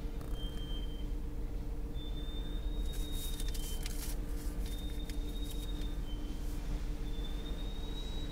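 Automatic car wash machinery heard from inside the car: a steady low rumble with a steady two-note hum, a thin high whistle coming and going, and bursts of hissing spray or cloth strips about three seconds in and again around five to six seconds.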